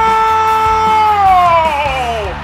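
A commentator's long, held goal shout, loud and steady on one pitch, sliding down as it dies away near the end, over a background music track.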